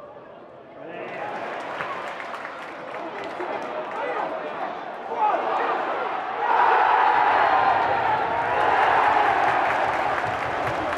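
Football stadium crowd noise that builds from about a second in and swells into a loud roar of voices about six and a half seconds in, as a goalmouth chance develops.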